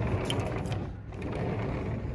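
Sliding patio door rolling open along its track, a continuous grinding rumble of its rollers.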